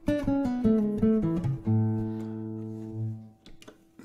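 Nylon-string classical guitar: a quick descending run of plucked notes, then a chord that rings and fades out a little past three seconds in. The notes are played to check the tuning, the strings having drifted as the room warms.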